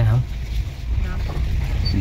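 Low, steady rumble of a Hyundai Creta heard from inside the cabin as it drives slowly along a rough village dirt lane, with a short spoken "hm" at the start.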